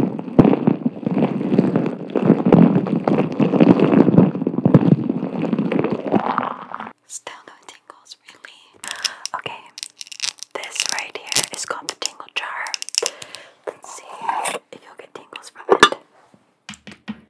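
Long acrylic nails rubbing and squeezing a clear flake-filled ball held against the microphone make a dense rustling that stops about seven seconds in. After that come soft whispering and scattered light taps and clicks, with one sharper click near the end.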